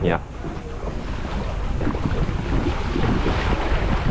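Wind buffeting the microphone, a steady rushing noise, with small waves washing on a sandy beach beneath it.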